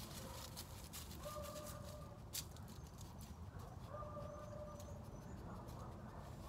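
Faint crackling and rustling of dry leaves as a small dog sniffs and paws through them, with one sharper click about two and a half seconds in. A faint drawn-out call of unknown source is heard twice, each under a second long.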